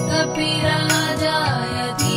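Instrumental backing of a Hindu devotional mantra chant between sung lines: a sustained drone with regular low drum beats and a bright, cymbal-like strike about once a second.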